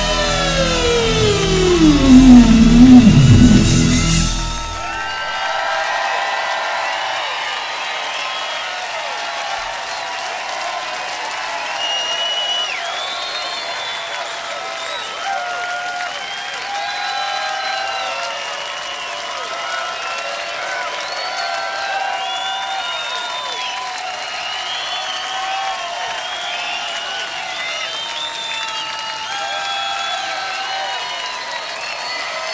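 An electric guitar's last note dives steeply in pitch over a held chord from the band, louder in the middle and cut off about five seconds in. Then a large crowd cheers, whistles and applauds steadily.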